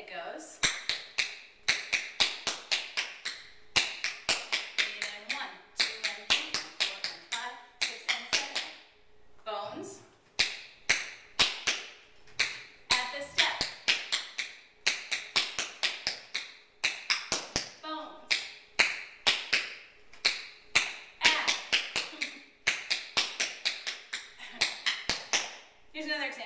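Tap shoes' metal taps striking a wooden floor in fast rhythmic runs of sharp clicks, with a short break about nine seconds in.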